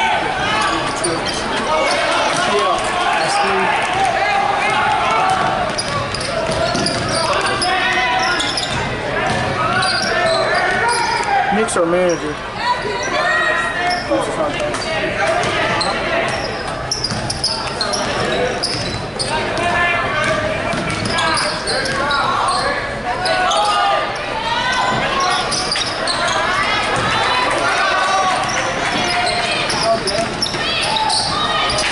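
Basketball bouncing on a hardwood gym floor, heard over the steady chatter of spectators in the gym.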